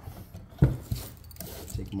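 Steel portable band saw blade being worked off the saw's wheels and blade guides by hand: one sharp metallic knock a little over half a second in, a lighter one just after, then small clicks.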